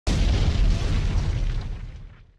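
Explosion sound effect for an animated logo intro: a sudden deep boom that rumbles and dies away over about two seconds.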